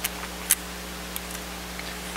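A few small sharp clicks of parts being handled inside an opened laptop, one louder click about half a second in, over a steady low electrical hum.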